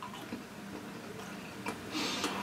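Faint chewing of a piece of crystallized ginger in the mouth, with a few small clicks.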